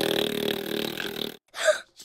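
Cartoon sound effect of a raspy, sputtering blow of air, like a baby blowing a raspberry with the tongue out. It stops suddenly about a second and a half in and is followed by a brief short sound.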